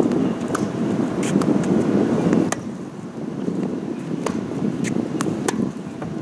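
Tennis ball being hit back and forth in a rally on a hard court: several sharp pops of racket strikes and ball bounces, unevenly spaced, over a steady low rush of wind noise on the microphone.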